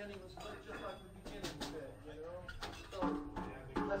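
Low, indistinct talk between tunes, with a few brief knocks about a second and a half in.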